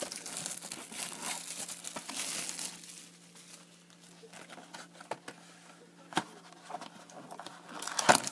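Clear plastic shrink wrap off a sealed trading-card box being crumpled in the hands, a crinkling that lasts about three seconds. Then it goes quieter, with a couple of light taps as the box is handled.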